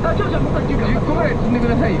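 Voices talking over the steady low drone of a heavy tractor-trailer's engine and tyre noise inside the cab.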